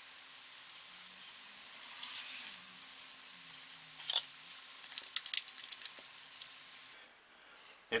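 Soaked wooden plank sizzling under a heated plank-bending iron pressed and rocked against it, the hot iron driving steam out of the wet wood as it bends. A few small clicks and taps about halfway through, and the sizzling stops abruptly near the end.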